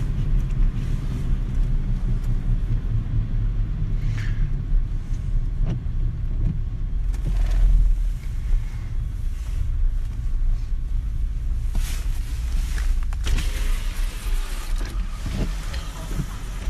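Car engine and road rumble heard from inside the moving vehicle: a steady low drone that swells a little about eight seconds in.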